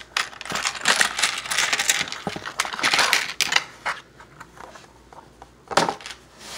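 Loose plastic Lego pieces clattering and tumbling onto a Lego baseplate and a pile of parts, a dense run of small clicks that thins out after about four seconds, with one louder click near the end.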